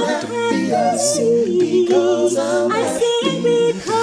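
Mixed a cappella group singing a gospel hymn in close harmony, several voices at once with gliding, ornamented lines. The singing dips briefly just before the end.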